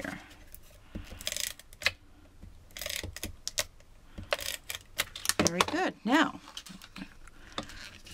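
Fast Fuse adhesive applicator pressed and run along cardstock edges, giving clusters of sharp clicks and rasps. A brief wordless voice sound comes a little past the middle.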